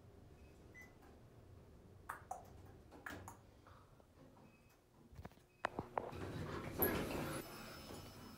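Dover traction elevator arriving at a floor: a run of sharp relay clicks from the controller, then the center-opening car doors sliding open near the end.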